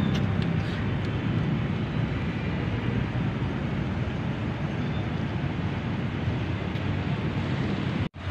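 Steady outdoor traffic noise: an even rumble and hiss with no distinct events standing out.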